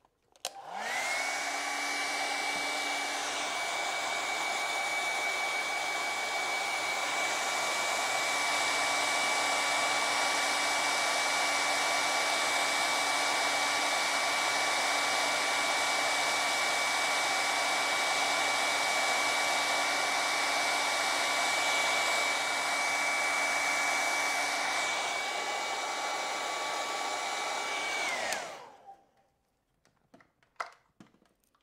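Hair dryer drying wet acrylic paint: it switches on and spins up, runs with a steady whine for almost the whole half-minute, then is switched off and winds down near the end.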